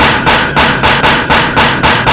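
A fast, even run of sharp percussive hits, about four a second, each dying away quickly.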